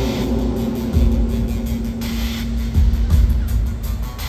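Live rock band music played over a stadium PA in an instrumental passage: a held note runs under two deep bass swells, about a second and three seconds in.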